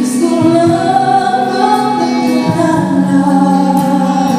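Live band music: a woman sings long, gently bending notes into a microphone, backed by guitar and percussion.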